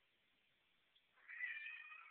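Calico cat meowing once, a single drawn-out meow that starts just over a second in and lasts about a second.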